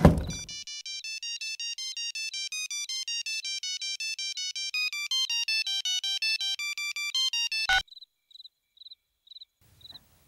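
Mobile phone ringtone playing a fast melody of short beeping notes for about seven seconds, then cutting off suddenly as the call is answered. A brief loud hit comes just before the melody starts.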